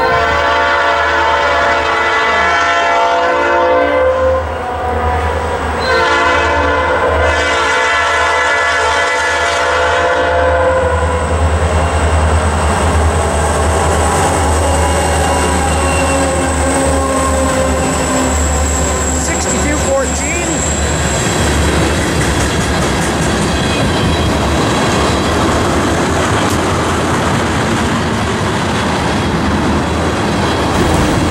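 ICE SD40-2 diesel locomotives sounding two long horn blasts as they approach, then passing with their engines running. The tank cars behind them follow, rumbling and clattering steadily over the rails.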